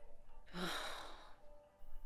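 A single sigh, a breathy exhalation lasting about a second that starts about half a second in with a brief voiced onset.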